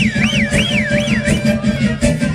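Live Black Sea horon folk music with a steady driving beat. Over the first second or so, a high tone warbles up and down about three times a second.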